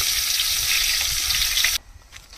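Curry leaves and seeds frying in hot oil in an aluminium pot: a steady sizzle that cuts off abruptly near the end.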